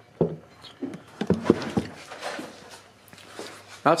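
A few light clicks and knocks from a hex driver and the small plastic and metal parts of a radio-controlled crawler's front axle being handled, bunched together in the first two seconds.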